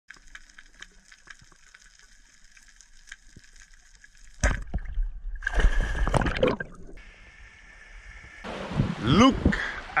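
A faint underwater hiss with scattered small clicks, then about four seconds in a sudden loud splash as the camera breaks the sea surface. Water sloshes and splashes for a couple of seconds, and a man's voice comes in near the end.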